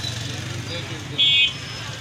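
Street traffic: a short, loud vehicle horn toot a little past a second in, over a steady low engine rumble.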